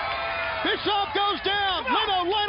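A man's voice in short rising-and-falling phrases, starting about half a second in, over a steady wash of arena crowd noise.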